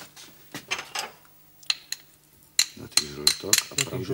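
A plastic spatula knocking and scraping against a ceramic mixing bowl as chopped smoked meat is pushed in, a string of sharp clicks and taps, coming thicker in the second half.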